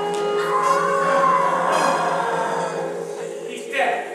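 Stage-musical accompaniment with a voice over it: sustained chords under a bending vocal line, with a short falling glide near the end.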